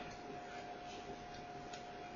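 Faint room tone between spoken phrases: a low steady hiss with a thin, steady high hum running through it.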